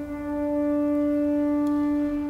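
Organ sounding one long, steady held note.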